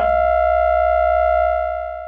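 A steady electronic tone with a low hum beneath it, held at one pitch and starting to fade out near the end.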